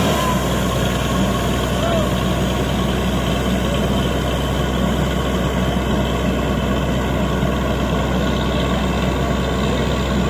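Truck-mounted borewell drilling rig's engine running steadily. Its sound drops lower right at the start as the muddy air-flush spray from the bore stops, then it settles into a steady idle.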